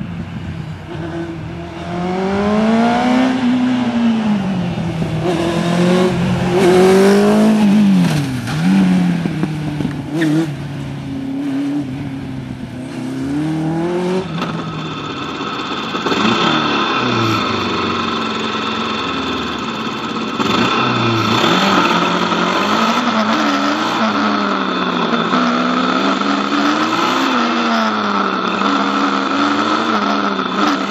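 A small sports car's engine revving up and down again and again as it weaves through a cone slalom. About halfway through, heard from the kart itself, a PRM Kartcross 500cc engine revs up and down through the course, with a steady high whine over it.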